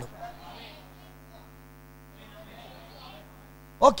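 Steady electrical mains hum carried through the amplified microphone sound, a stack of even, unchanging tones, during a pause in speech. A faint voice murmurs twice in the background, and a man says "okay" just before the end.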